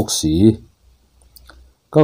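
A voice speaking, broken by a pause of about a second that holds only a faint low hum and a couple of soft clicks, with speech resuming near the end.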